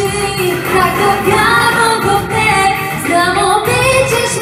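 A young female singer performing a pop song into a handheld microphone over backing music, holding long sung notes.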